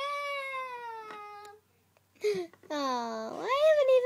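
A girl's high-pitched wordless cries: one long held cry, then a few shorter ones that slide down and then up and down in pitch.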